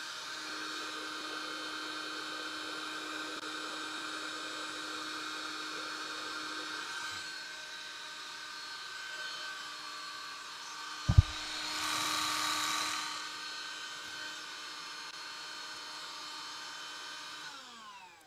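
Cordless Bissell Pet Stain Eraser spot cleaner's motor running with a steady, high whine. There is a single knock about eleven seconds in, then a brief louder rush of air, and near the end the motor winds down as it is switched off.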